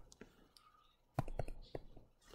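Stylus tapping and drawing on a tablet screen: a few light taps close together, a little over a second in.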